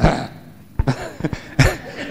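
Handheld microphone being handled and brought up to the mouth: a few short knocks and rustles, the loudest right at the start, with brief breathy vocal sounds close to the mic.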